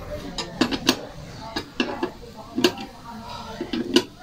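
Steel T-wrench clinking against the bolt and the steel step grill rack as its mounting bolt is tightened: about half a dozen sharp metallic clicks at irregular intervals.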